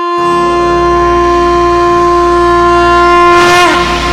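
A wind instrument holds one long, steady note over a low drone as the music opens; near the end the note bends down in pitch and the fuller accompaniment comes in.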